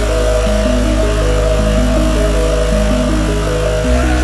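Hardcore electronic dance music from a DJ mix: a melody of held synth notes stepping over a sustained bass and a dense noisy synth layer, with no kick drum beat. The bass note changes near the end.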